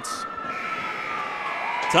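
An ice rink's end-of-game horn sounds one long, steady note, its pitch sagging slightly as it goes. It signals that time has expired in the game.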